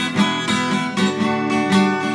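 Acoustic guitar playing a blues in A, chords struck again and again in a steady rhythm.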